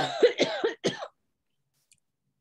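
A person coughing, four or five quick coughs in a row lasting about a second.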